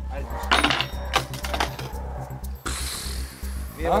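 Intro music with an evenly pulsing bass, with several sharp metallic clinks in the first second and a half and a hissing whoosh in the middle. A voice begins right at the end.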